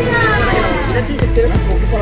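Background music with a steady low bass and a melody line that slides downward near the start.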